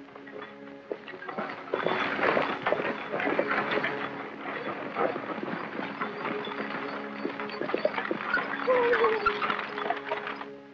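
A horse-drawn stagecoach arriving and pulling up: a team's hoofbeats and the clatter of the coach, starting about two seconds in, over a film's music score.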